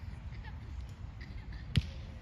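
A single sharp thump near the end, over steady outdoor background noise and faint distant voices.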